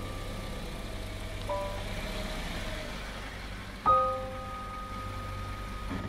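An SUV's engine idling with a steady low hum, while a few sustained music notes sound over it, a soft one about a second and a half in and a stronger one about four seconds in.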